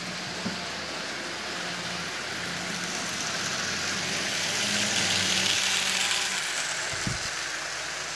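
Propeller-driven model rail car running at half power: a steady whirr of its small electric motor and spinning propeller as it pushes a loaded train of cars along the track, running smoothly. The whirr swells in the middle as the car passes close, then eases off.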